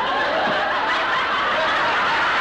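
A studio audience laughing, many voices chuckling together at a steady level.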